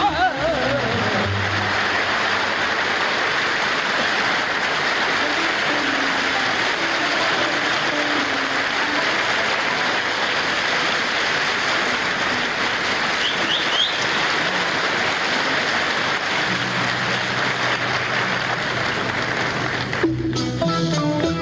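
A large concert audience applauding steadily at a live Arabic music concert, an even wash of clapping that follows the orchestra and singer breaking off at the start. Low held instrument notes creep in under the applause in the last few seconds.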